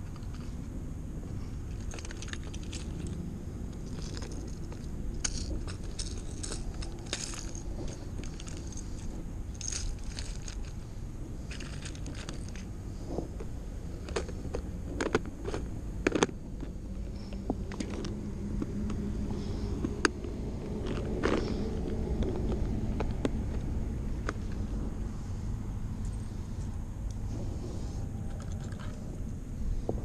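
Fishing lures and a plastic tackle box being handled as lures are picked through, giving scattered clicks and rattles over a steady low rumble of wind on the microphone.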